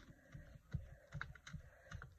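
Faint, irregular light taps and clicks of a hand handling a paper page on a craft table.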